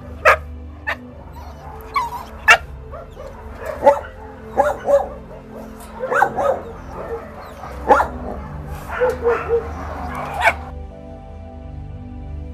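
Several young dogs barking and yipping in short, separate barks about once a second, over soft background music. The barking stops near the end, leaving only the music.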